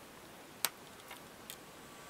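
A single sharp click of a small power switch being flipped on a homemade signal tracer, about two-thirds of a second in, then two much fainter clicks. A quiet hiss is heard throughout.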